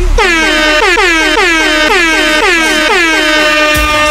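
Air-horn sound effect dropped into a tribal/guaracha dance mix: about six short horn blasts a little over half a second apart, each sliding down in pitch as it starts, then one long held blast near the end. The beat's deep bass cuts out just as the horn blasts begin.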